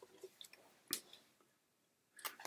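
Tarot cards being picked up and handled: a few faint small clicks and taps, the sharpest about a second in, then near silence.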